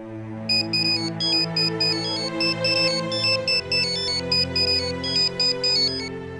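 Mobile phone ringtone playing a quick, repeating melody of short electronic notes, starting about half a second in, over sustained low background music.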